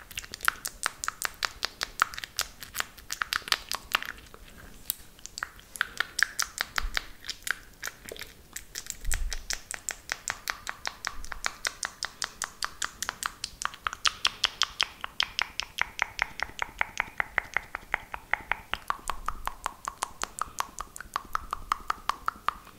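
Fast wet mouth sounds close to the microphone: rapid tongue and lip clicks and smacks, several a second, made with a hand cupped over the mouth.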